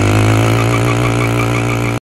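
Honda CRF125F's single-cylinder four-stroke engine idling steadily, moments after starting on freshly changed oil and running smoothly.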